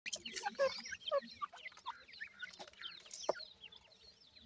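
Four-week-old francolin chicks peeping: many short, high, downward-sliding chirps overlapping one another, busiest in the first second and a half, with a few sharp ticks among them.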